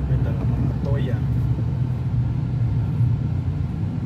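Steady low rumble of a car heard from inside its cabin, with a brief faint voice near the start and again about a second in.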